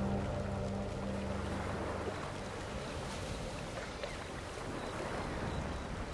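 Steady rushing, lapping water ambience from a fantasy soundscape, with faint high chirps now and then. A sustained soft music pad fades out in the first two seconds.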